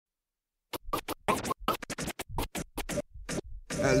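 Turntable scratching: a quick run of short chopped cuts, about seven a second, starting just under a second in. A hip-hop track comes in just before the end.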